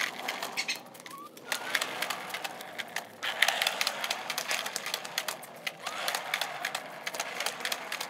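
Irregular light clicks and scuffs over a steady outdoor hiss, with a short rising bird chirp about a second in.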